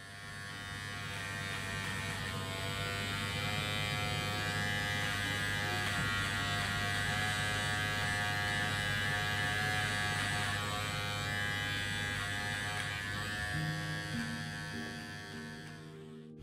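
Steady electric buzz of barber's hair clippers, with a strong low hum and bright overtones, fading in at the start and out at the end.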